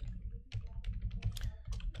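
Typing on a computer keyboard: a quick run of key clicks starting about half a second in.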